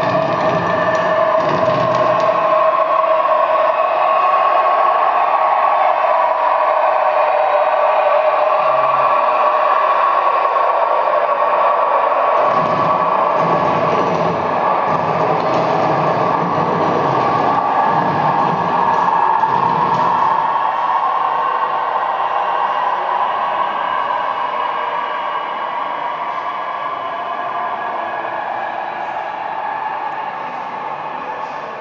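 Laptop-generated electronic sound-art piece played over four loudspeakers: a dense, sustained noisy drone with steady held tones, low rumbling swells through the middle, slowly fading near the end.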